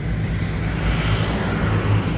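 Road traffic: a vehicle passing, its noise swelling and fading about halfway through, over a steady low hum.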